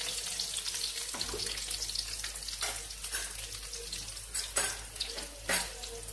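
Garlic cloves and curry leaves sizzling in hot oil in a pan, the tempering for a fish curry, stirred with a wooden spatula. A few short knocks or scrapes break through the steady sizzle in the second half.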